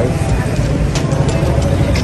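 City street traffic, a steady low rumble, mixed with background music.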